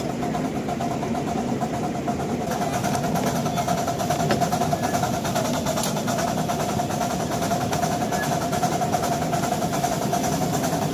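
Ride-on miniature park railway train running steadily along the track, heard from a passenger car: continuous mechanical running noise with a steady tone through it.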